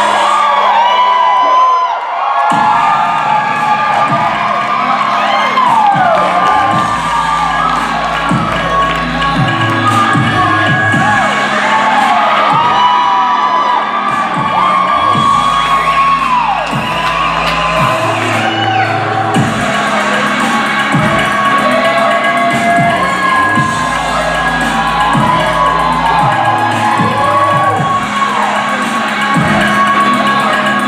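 Recorded performance music with a low bass line, with an audience cheering and whooping over it throughout.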